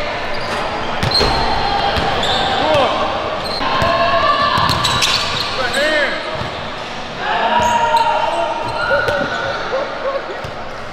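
Basketball bouncing on a hardwood gym floor amid sneakers squeaking in short sharp chirps as players cut and stop, with players' voices calling out over the play.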